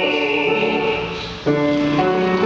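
Tenor voice singing a vocal exercise with piano, holding notes that move in steps. The sound fades slightly after about a second, then a new note starts sharply just before the end.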